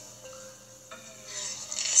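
A quiet lull: a faint steady hum with a soft hiss that grows louder near the end.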